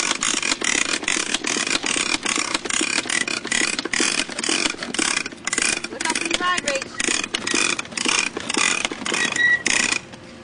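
Child's bicycle with training wheels rolling slowly over asphalt, giving a loud rhythmic rattling scrape about three times a second with a thin squeak in each pulse.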